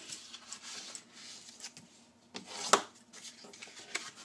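Cardstock being folded along its score lines and creased with a bone folder: soft paper rustling and rubbing, with one sharper click a little past the middle.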